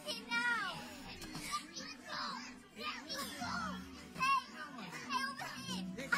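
Film soundtrack: young voices speaking urgently and a girl calling out, over background music.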